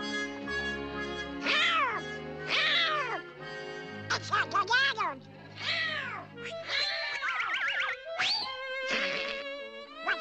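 Cartoon soundtrack: orchestral background music under a run of squawky cartoon-duck voice cries, each sliding down in pitch, about seven in all.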